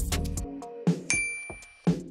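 Upbeat background music dies away, and about a second in a bright electronic ding rings on one steady high pitch for most of a second. It is the chime that marks the end of the quiz countdown and the reveal of the correct answer.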